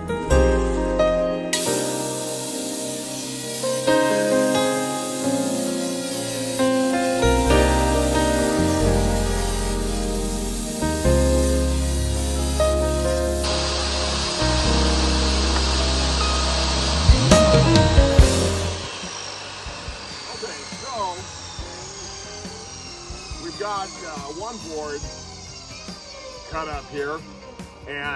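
Background music with steady sustained notes and a bass line. About halfway through, a portable jobsite table saw runs and rips poplar boards for about five seconds, then stops.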